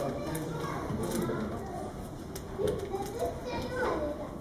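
Background chatter of several people's voices, children among them, with a few light clicks.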